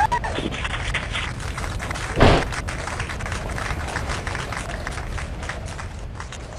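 Open mission-control audio loop between call-outs: a steady low hum and hiss with faint clicks, and one loud thump about two seconds in.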